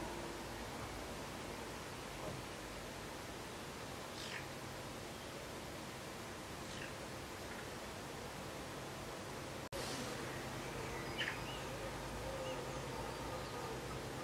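Quiet workbench sound of a thread-cutting die being turned by hand on a thin brass wire held in a vise, with a few faint, short, high squeaks from the cutting.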